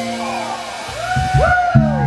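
Live rock band with guitars, bass, drums and keyboard playing: a held chord breaks off at the start, then sliding, bending notes rise and fall over low bass and drum hits that come in about a second later.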